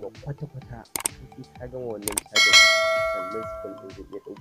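Subscribe-button animation sound effect: short clicks about one and two seconds in, then a bell ding about halfway through that is the loudest sound and rings out for over a second as it fades.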